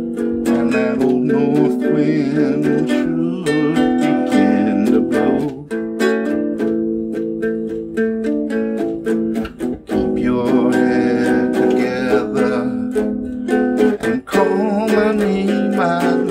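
A guitalele strummed in a steady rhythm, with a man singing along.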